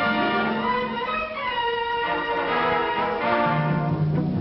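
Orchestral film score with violins carrying the melody over lower strings, the cellos and basses coming in near the end.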